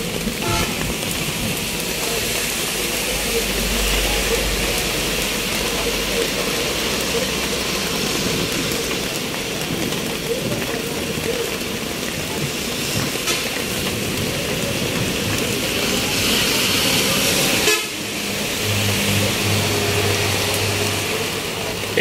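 Steady rain hiss mixed with road traffic: vehicles passing and horns tooting. A low, steady engine drone comes in about three seconds before the end.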